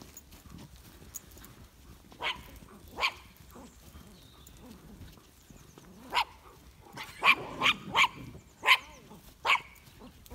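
A small dog barking at sheep to drive them along: a few single barks, then a quick run of five barks over the last three seconds.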